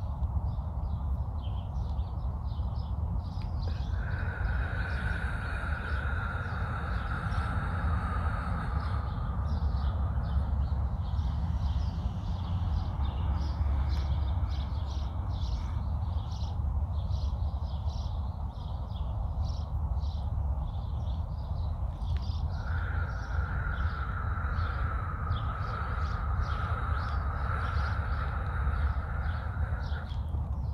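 Birds chirping over a steady low rumble, with two long slow exhalations, each lasting six to seven seconds, one early and one near the end: a person breathing out slowly in a counted breathing exercise.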